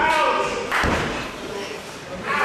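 A single heavy thud on the wrestling ring's canvas just before a second in, with voices shouting around it.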